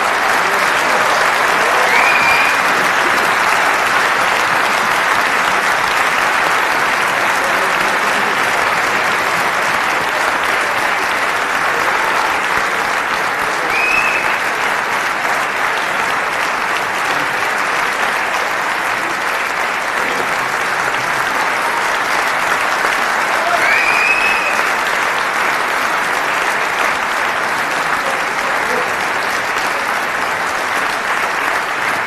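Concert hall audience applauding steadily, with a few short high calls rising briefly over the clapping.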